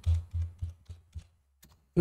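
Computer keyboard keys being typed, several keystrokes in a row growing fainter, as a short password is entered.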